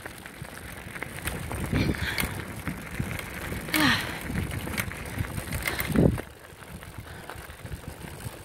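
Bicycle being ridden over grass and a gravel track: a steady rumble of tyres with rattling and clicking from the bike, broken by three brief louder sounds about two seconds apart.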